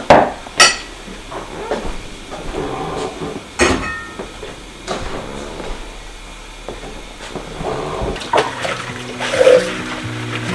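Drinking glasses clinking against each other and the wooden tabletop as they are picked up and gathered, a few sharp ringing clinks spread through. Near the end, water and dishes at a kitchen sink.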